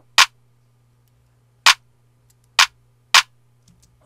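Four short, sharp clicks at irregular spacing, each about a second or less apart, from working the computer controls, over a faint low steady hum.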